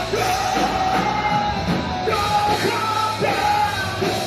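Metalcore band playing live: a female singer holds long sung notes over distorted electric guitars, bass and drums.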